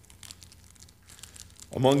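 Faint crinkling and rustling, then a man starts speaking near the end.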